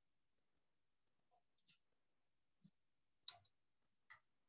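Faint, irregular computer keyboard keystrokes as a password is typed: about six separate clicks, the loudest a little past three seconds in.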